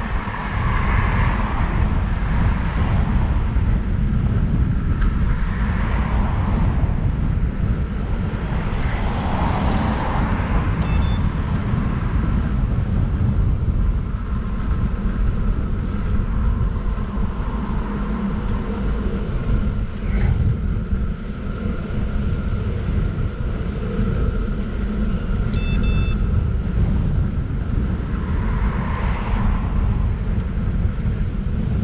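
Wind buffeting the microphone of a bicycle-mounted camera while riding, a steady low rumble, with road noise from cars swelling and fading a few times.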